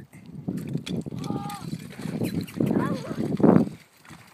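Indistinct human voices murmuring and talking quietly, loudest near the end.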